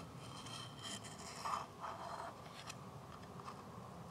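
Faint scraping and small clicks as a metal O-ring pick works a greased rubber O-ring down into the groove of a plastic oil filter housing cap.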